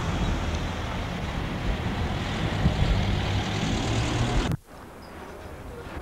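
A car engine running close by: a loud low rumble that cuts off abruptly about four and a half seconds in at a tape edit, leaving quieter street noise.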